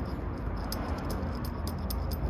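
A run of small, irregular metallic ticks as an end-fastener screw and its tabbed collar are turned by hand into the threaded end of a T-slot aluminium extrusion, over a steady low hum.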